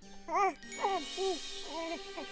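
A sparkling cartoon chime shimmer over a soft held music note, with a cartoon character's short, high, gliding vocal sounds, about half a dozen of them.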